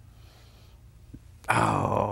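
Quiet room tone with a low steady hum, then about one and a half seconds in a man's voice breaks in with a loud, drawn-out wordless vocal sound that runs on into speech.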